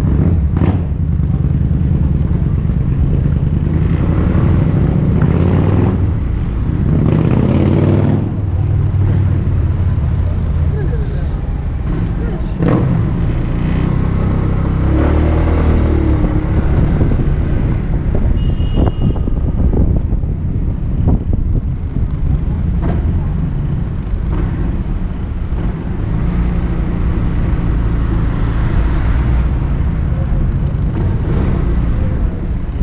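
Kymco Xciting 250 scooter's single-cylinder engine running while riding slowly in traffic, under a low rumble of wind on the microphone. The engine note rises and falls a few times as the throttle is opened and closed.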